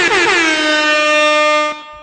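A loud air-horn sound effect played over the broadcast. It opens with a run of quick downward pitch slides, then holds one steady note and cuts off near the end.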